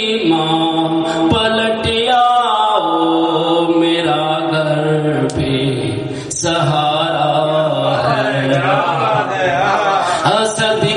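A man's voice chanting a Urdu devotional lament (noha) into a microphone, drawing out long, wavering held notes with only brief breaks for breath.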